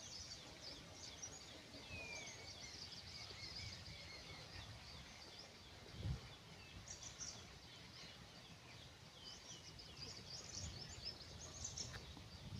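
Faint chirping and twittering of several small birds, with short high calls scattered throughout and a gliding whistle about two seconds in, over a low rumble on the microphone; a soft low bump about six seconds in.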